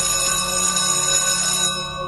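Electric class bell ringing steadily, a bright metallic ring that cuts off just before the end.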